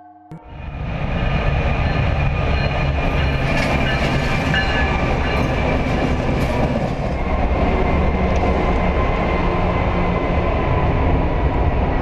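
A train passing within inches in a rail tunnel: a loud, steady noise of wheels on rails that builds up in the first second and then holds. Thin steady high tones of metal on metal and a few sharp clacks sound over it.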